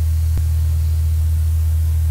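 Steady low electrical hum with a faint hiss from the sound system, with one sharp click about half a second in.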